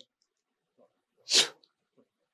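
A single short, sharp burst of breath noise close to a handheld microphone, about a second and a half in, with silence around it.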